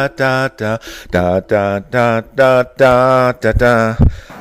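A voice chanting in short, evenly repeated syllables on a steady pitch, with one longer held note near the end, as music laid over the opening shots.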